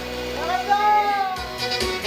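Korean trot music: held keyboard chord tones, then a voice sings a note that swoops up and falls back, and a steady drum beat comes in about one and a half seconds in.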